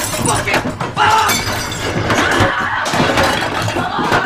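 Crockery and glass smashing again and again in a close fight, with grunting and straining voices between the crashes.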